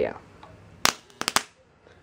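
Electric arc snapping as the bare ends of a heavy copper cable, wound as a low-voltage high-current secondary through two variacs, are touched together at about 6 volts and close to 1000 amps: four sharp cracks in about half a second, near the middle.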